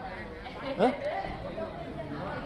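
Background chatter of many people talking in a large hall, with one voice standing out briefly a little under a second in.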